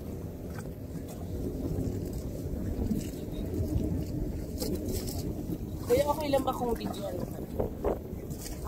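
Wind on the microphone over the low rumble of the tour boat's engine, with a few sharp knocks on the deck and hull. A voice calls out briefly about six seconds in.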